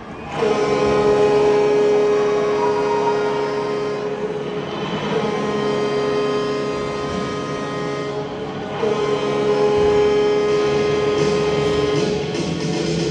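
Loud arena horn sounding three long blasts of about four seconds each, one steady pitch with many overtones, the second starting about five seconds in and the third about nine seconds in.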